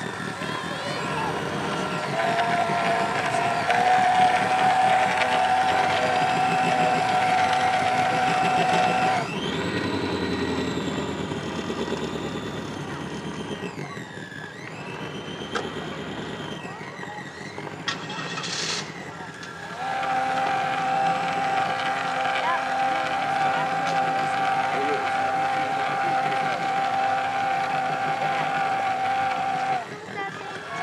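Model tug boat's drive motor running with a steady whine, which wavers and fades for about ten seconds in the middle, with a short hiss near the end of that stretch, then comes back steady.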